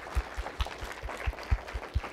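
Audience applauding: a run of irregular hand claps, several a second.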